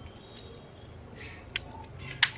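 Metal link bracelet of a Casio LTP1310 women's watch clinking lightly as the watch is turned over in the hands: a few small metallic clicks, the sharpest about a second and a half in.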